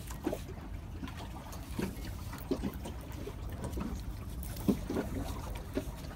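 Faint scattered clicks and handling sounds from a Shimano Calcutta baitcasting reel as its opened spool is turned by hand to reach the centrifugal brake pins, over a steady low rumble.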